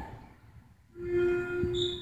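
A loudspeaker announcement dies away in the gym's echo, then about a second in a pitch pipe sounds one steady note for about a second and a half: the starting pitch given to the choir before the anthem.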